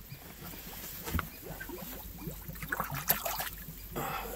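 Water bubbling in a small spring pool, gas bubbles rising and popping at the surface with scattered small clicks and gurgles, one sharper click about three seconds in.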